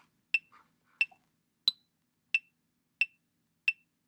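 Soundtrap's software metronome counting off at 90 beats per minute: six short electronic clicks about two-thirds of a second apart, the last beats of an eight-beat count-off before recording. The fourth click is higher-pitched, the accented first beat of the second bar.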